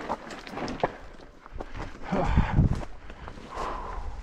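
Mountain bike clattering down a rocky, stony trail, with irregular sharp knocks and rattles as the tyres and frame take the rocks. A louder, deeper burst of rumbling and rattling comes a little past halfway.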